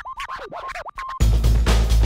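Backing music in which the bass and beat drop out for a short break of record-scratch sounds, quick rising and falling pitch sweeps, before the full beat comes back in a little over a second in.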